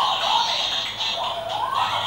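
Hasbro Yo-kai Watch toy playing a medal's little theme song through its small built-in speaker, a thin, tinny melody with gliding notes.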